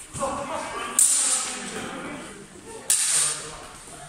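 Steel practice longswords clashing twice, about two seconds apart, each strike ringing briefly before it fades in the hall.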